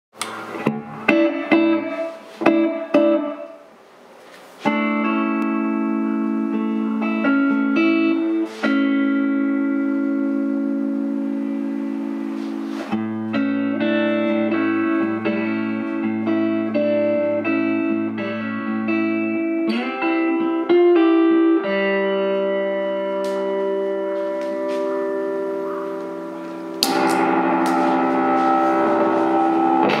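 Electric guitar (PRS CE22 with P90 pickups) played through a '66 Fender Vibro-Champ into a 1x12 cabinet with a Celestion Gold speaker, at first clean: a few short picked notes, then sustained chords left to ring. About three seconds before the end the '69-style Muff Fuzz pedal is switched on and the guitar turns fuzzy and louder.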